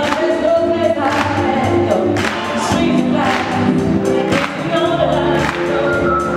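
A woman singing into a microphone over backing music with a steady beat.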